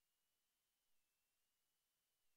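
Near silence: faint hiss with a very faint steady high tone.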